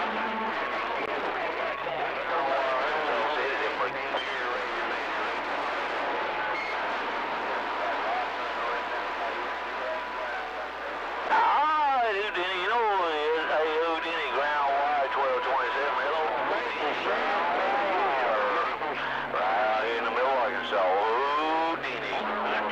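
A CB radio receiving distant stations: garbled, overlapping voices over static, with a steady whistle through the first half. About 11 seconds in, a stronger voice comes in louder.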